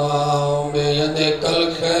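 A man's voice chanting a mournful masaib recitation for Muharram into a microphone, in long held notes with a brief break in the middle.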